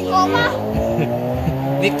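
Electronic keyboard holding a sustained chord, with voices talking over it.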